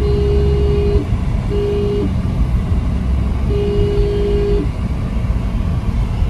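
A vehicle horn honks three times: a blast of about a second, a short one, then another of about a second. Under it is the steady low rumble of road and engine noise inside a moving car's cabin.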